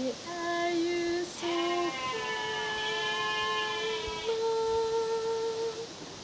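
A woman singing unaccompanied in long held notes: a short phrase, then one steady note held for about four seconds near the end.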